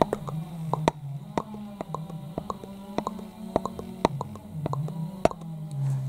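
Quick, light, irregular taps of a pen's end poked against the camera lens, several a second. Under them runs a low, wavering drone from a chainsaw working in the distance.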